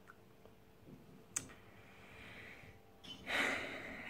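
A quiet room with one sharp click about a second and a half in, then a person's audible breath, a sigh or intake, near the end.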